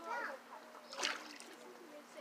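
Children's voices calling out with water splashing, including a short sharp splash about a second in.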